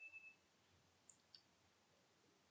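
Near silence, broken by two faint clicks a little after a second in, typical of a computer mouse being clicked.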